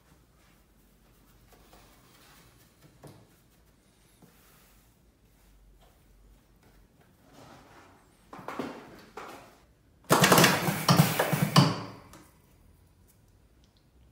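A hand rustling loose tobacco in the hopper, then about two seconds of loud, rapid mechanical clattering as an electric cigarette-filling machine (Techmatik All in One 3.0) runs one cycle and fills a cigarette tube.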